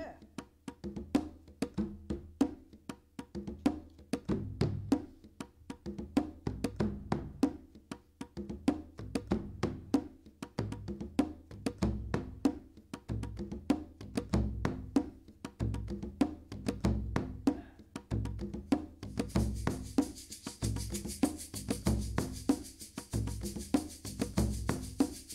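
Hand percussion building up in layers: quick, sharp hand-drum strokes keep a steady rhythm, a deep frame-drum beat joins about four seconds in, and a shaker's steady hiss is added near the end.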